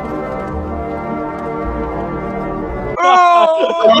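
A long, steady, low horn-like tone held unchanged for about three seconds over a low rumble, as a dramatic sound effect. It cuts off at about three seconds, when loud laughter breaks in.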